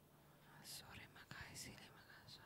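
Faint whispered speech, a voice murmuring softly with a few sharp hissing s-sounds.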